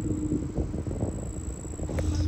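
Outdoor background noise: an uneven low rumble with a steady low hum and a thin, steady high-pitched whine over it.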